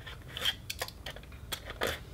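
A tool scraping and cutting at a foam-board fuselage: a series of short scratchy strokes and light handling clicks, the loudest stroke near the end.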